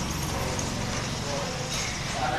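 Faint voices over steady background room noise. No punch lands on the bag.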